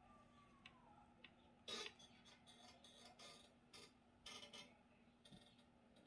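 Near silence: room tone with a faint steady hum and a few soft scattered ticks and clicks.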